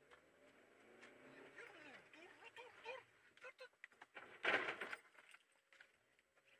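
Faint talk in Russian from a car radio, with one short loud burst about four and a half seconds in.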